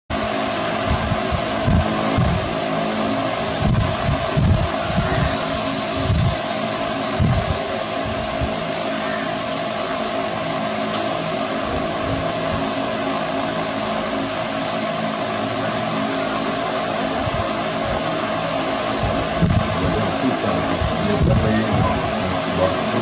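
A steady mechanical hum with a held mid-pitched tone over a hiss, broken by irregular low thumps, most often in the first eight seconds and again near the end.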